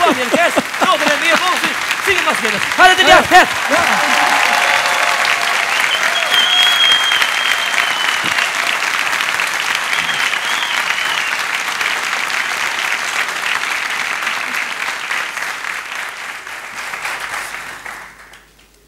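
Studio audience applauding, a long steady round of clapping that builds after a few seconds of voices and fades away near the end.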